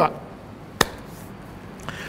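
A single sharp knock just under a second in, against faint room tone.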